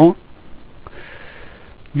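A man's short, soft breath in through the nose between spoken phrases, with a faint click just before it; the tail of his speech ends just after the start and his voice resumes at the very end.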